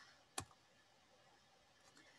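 Near silence with a single short, sharp click about half a second in.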